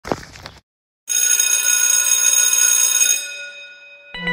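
A brief sound, then about half a second of silence, then a metal bell ringing continuously for about two seconds before dying away near the end.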